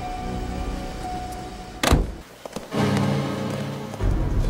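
Film soundtrack with quiet music, broken about two seconds in by a single loud thunk of a car door being shut. After a brief dip, low music resumes.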